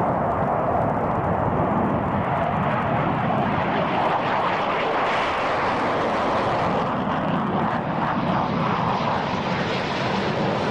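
Jet fighter aircraft in flight, its jet engine making a loud, steady noise with no break.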